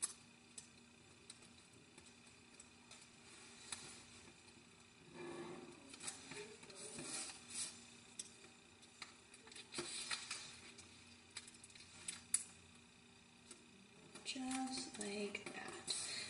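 Origami paper being folded and creased by hand: faint rustles and crinkles of the paper as it is flattened, with light clicks and taps of fingernails pressing the folds down. The rustling grows louder about five seconds in, again around ten seconds, and near the end.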